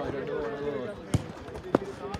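A football kicked twice, two sharp thumps about half a second apart, over players' shouting on the pitch.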